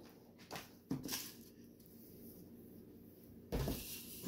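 Faint clicks and small knocks of things being handled on a kitchen counter, then a dull thump about three and a half seconds in.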